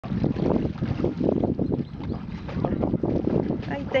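Wind buffeting the microphone in irregular low gusts at the lakeshore, with a voice starting near the end.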